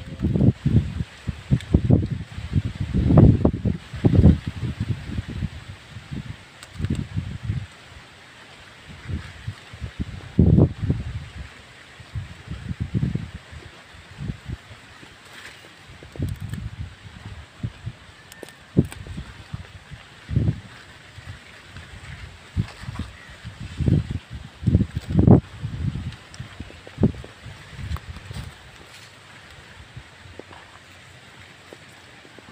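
Irregular low rumbling gusts of wind on the phone's microphone, with rustling of leafy greens as leaves are picked by hand.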